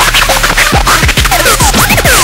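A vinyl record scratched back and forth by hand on a turntable, over a beat with a deep kick drum that drops in pitch. The scratches come thicker in the second half as quick rising and falling sweeps.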